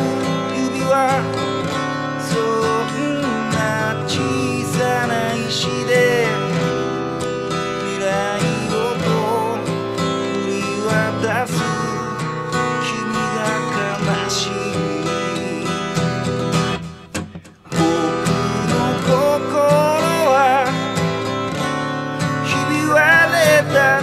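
A Japanese pop song sung by a man to acoustic guitar accompaniment. The music drops away briefly about 17 seconds in, then resumes.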